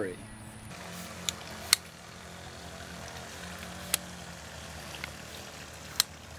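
Telescoping handles of a bypass lopper being worked: a few short, sharp clicks as the spring-loaded pins lock into their detents.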